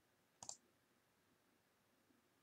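Near silence: room tone, broken by one quick, sharp double click about half a second in.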